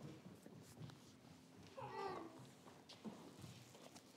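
Faint, brief whiny vocal sound from a toddler about halfway through, a single bending cry, over light shuffling and knocks of people moving about.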